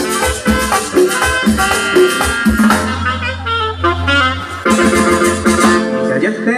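Live cumbia band playing an instrumental break, saxophone over bass, drums and percussion. About halfway through the band holds a long chord over a sustained bass note, then the beat picks up again.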